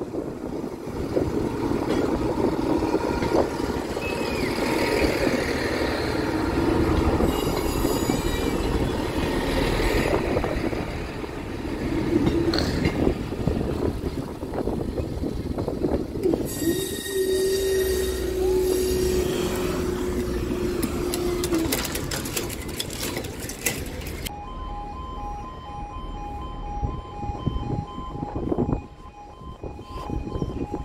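A Class 158 diesel multiple unit passes over the level crossing and pulls away: diesel engine noise and wheels on the rails, with a steady engine tone between about 17 and 22 seconds in. About 24 seconds in, the crossing's warning alarm starts, an alternating two-tone warble, as the barriers go up.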